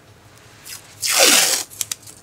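Green painter's tape pulled quickly off the roll, one loud ripping burst about a second in, followed by a few short clicks as the strip is handled.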